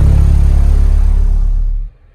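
Black Diamond DIA-R12 12-inch car subwoofer playing a loud, steady 35 Hz test tone for about two seconds in a dB burp test, driven at about 2,700 watts, well past its 1,200-watt rating. The tone cuts off sharply near the end.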